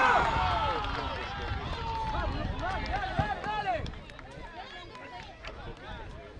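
Several voices shouting at once on a football pitch: loudest at the start, with calls carrying on and dying away after about four seconds.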